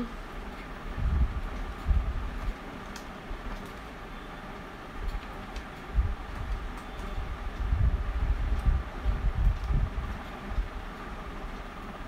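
Handling noise as a plastic word-game board is held and moved right at the phone's microphone: irregular low rumbles and bumps over a steady hiss, with a few faint clicks as plastic letter tiles are fitted into the board.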